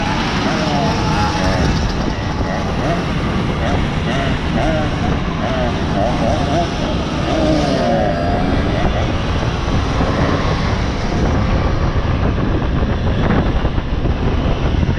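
Several Simson 50 cc single-cylinder two-stroke mopeds running along at riding speed, heard from one of the moving mopeds. Their engine notes waver up and down against each other over a steady rush of wind on the microphone.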